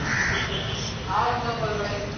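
Crows cawing in the background, one harsh call at the start and another about a second in.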